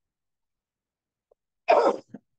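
A person clearing their throat once, a short rough burst near the end after a pause.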